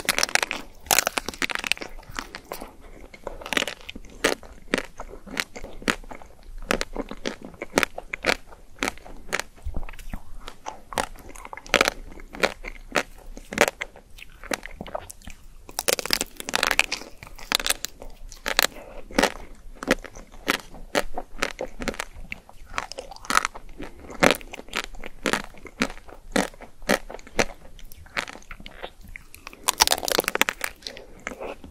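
Close-miked bites into a pink chocolate-coated Magnum ice cream bar: the hard chocolate shell cracks and crackles, then comes chewing with many small crunches. Denser bursts of crackling come just after the start, again around the middle, and at the very end.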